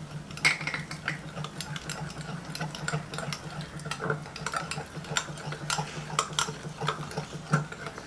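Wire whisk beating a thick batter in a cut-glass bowl: quick, irregular clicks and taps of the wires against the glass, over a steady low hum.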